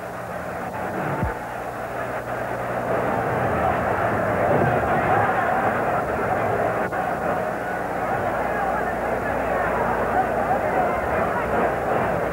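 A large stadium crowd's steady roar of voices, building over the first few seconds and then holding, with a low steady hum underneath from the old recording.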